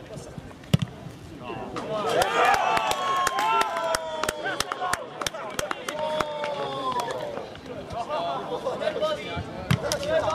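A ball kicked hard with a sharp thud under a second in, then a few seconds of shouting and cheering voices with scattered handclaps, celebrating a goal.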